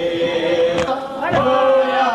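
Voices chanting a noha lament in held, gliding notes, with a couple of sharp thumps about a second apart.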